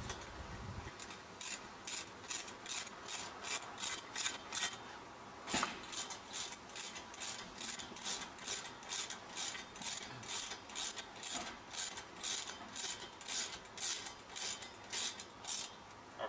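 Socket ratchet wrench with a 13 mm socket tightening bolts into a wall, its pawl rasping on each back-stroke, about two strokes a second. There is a short pause and a single knock about five seconds in, then the steady ratcheting carries on.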